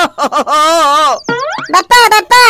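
A cartoon 'boing' sound effect comes about a second in: a falling, sliding twang with a wobble on top. Before it is a drawn-out vocal exclamation from a cartoon character.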